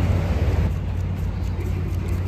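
Steady low outdoor rumble with no distinct event standing out.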